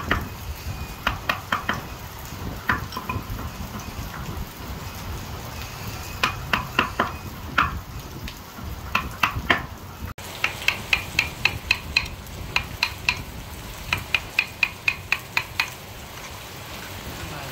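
Wood-carving chisel struck with a small wooden mallet, cutting into a carved wooden relief panel: quick runs of sharp knocks, about four or five a second, in bursts with short pauses between.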